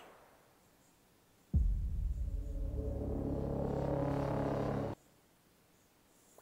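Movie trailer closing sting: a sudden deep boom about a second and a half in, then a low sustained droning chord that builds and cuts off abruptly about a second before the end.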